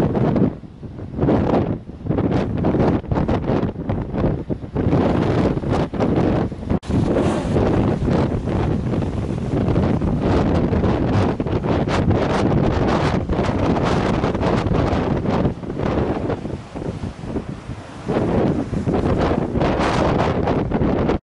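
Strong, gusting wind buffeting the microphone in uneven blasts with brief lulls, over rough storm sea surging against a rocky shore.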